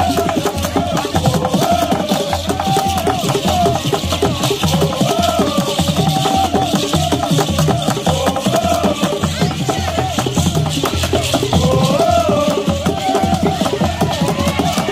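Traditional drumming on wooden log (slit) drums, a steady repeated beat, with wavering singing over it.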